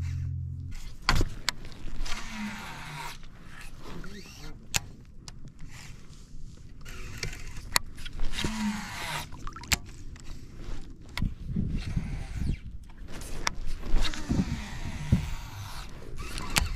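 Baitcasting reel in use: the spool whirs in two longer runs as line is cast out and cranked back in. Several sharp clicks from the reel and rod handling come between them.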